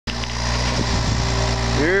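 John Deere compact excavator's diesel engine running with a steady low hum.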